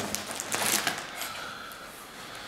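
Clear plastic packing wrap rustling and crinkling as it is cut with a utility knife and pulled off a model fuselage, fading toward the end.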